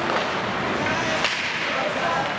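Ice hockey play echoing in a rink: skate blades scraping the ice and a sharp crack of a stick on the puck a little over a second in, over spectators' voices.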